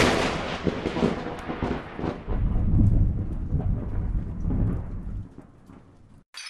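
Thunderclap sound effect: a loud crash that decays over the first two seconds into a crackle, then a low rolling rumble that fades out near the end.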